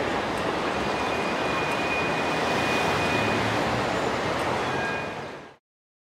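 Steady city traffic noise, an even rumble and hiss, with a faint thin high whine for a while in the first half. It fades near the end and cuts to silence.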